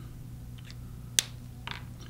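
A few small clicks from a felt-tip marker being handled, the loudest a single sharp click a little past a second in, then two softer ones just after; a low steady hum lies underneath.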